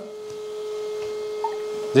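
A steady hum at one constant pitch, growing slightly louder toward the end.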